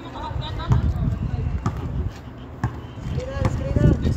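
Basketball bouncing on a concrete court: a few sharp bounces about a second apart, with players shouting.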